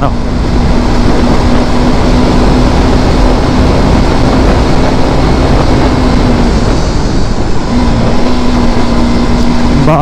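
Motorcycle riding at steady speed: loud wind rush on the microphone over a steady engine drone, which drops out for about a second near seven seconds in and then returns.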